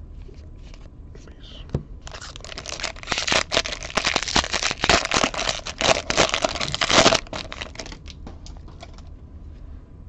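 Wrapper of a 2021 Bowman baseball card pack being torn open and crinkled: a dense crackling rustle that starts about two seconds in and stops about seven seconds in.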